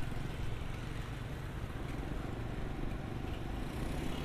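Steady street traffic noise of motorbikes around a city roundabout, heard from a moving rider.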